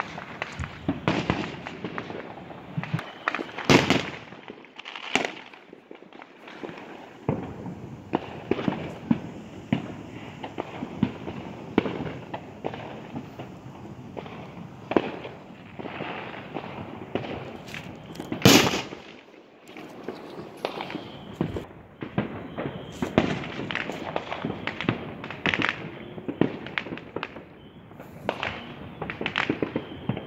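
Fireworks and firecrackers going off one after another, a steady run of pops and bangs, with two much louder bangs, about four seconds in and just past halfway.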